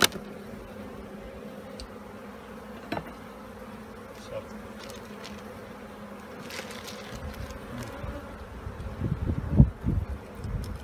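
Honeybees buzzing around an open hive frame, a steady hum. A sharp click comes at the start and another about three seconds in. Low rumbling knocks build up near the end.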